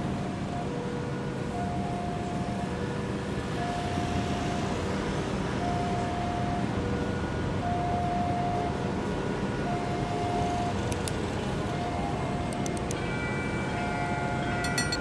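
Railway level-crossing warning alarm sounding with the barrier closed for an approaching train. It is a two-tone electronic chime, alternating a higher and a lower note of about a second each. Near the end a higher ringing with sharp clicks joins in.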